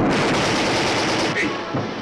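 Loud, dense burst of rapid automatic gunfire, like a machine gun, that fades out about a second and a half in.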